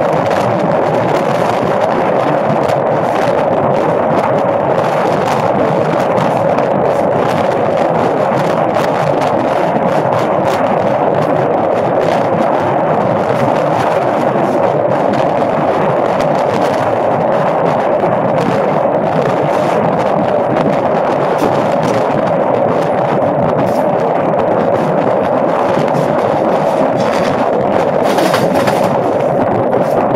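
Steady rushing noise of a passenger train moving at speed: wind past the side of the car and over the microphone, with the wheels rolling on the rails.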